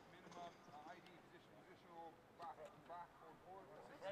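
Faint, indistinct voices of men talking in a group, with no clear words.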